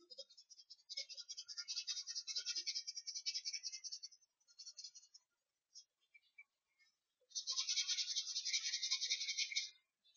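A colouring tool scratching rapidly back and forth on paper while shading, in two spells of a few seconds each: one starting about a second in, the other near the end.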